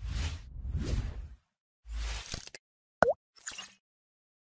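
Cartoon sound effects for an animated logo. There are two whooshes, a low thump about two seconds in, then a quick rising plop at about three seconds, followed by a brief high hiss.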